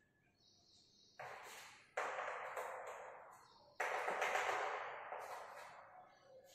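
Chalk scraping across a blackboard in three drawn strokes. Each starts sharply and trails off, and the last is the longest and loudest.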